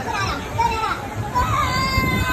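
Children's high-pitched voices squealing and calling out in short, gliding cries over a low murmur of crowd noise.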